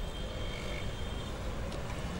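City street ambience: a steady low rumble of road traffic, with a faint thin high tone in the first second or so.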